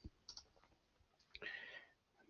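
Near silence with a couple of faint computer mouse clicks, one about a third of a second in and a short, slightly longer one about one and a half seconds in.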